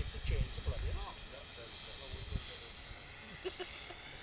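Faint high-pitched whine of a radio-controlled model Avro Lancaster's four brushed electric motors, far off in the sky and growing fainter, with low rumbling bursts in the first second.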